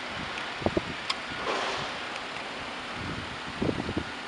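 Wind on the microphone over a steady outdoor hiss, with a few brief low bumps, once shortly after the start and a cluster near the end.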